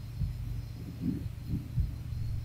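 Steady low hum of the recording setup, with four soft, dull low thumps spread through it.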